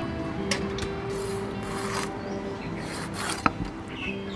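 Rasping, scraping strokes on a wooden chopping board while a snakeskin gourami is cleaned by hand, with a sharp knock about three and a half seconds in.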